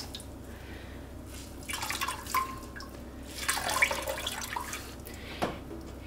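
Water dripping and trickling from a soaked wool sweater into a pot of soapy water as it is gently pressed out by hand, in two bouts about two and four seconds in. A short knock comes near the end.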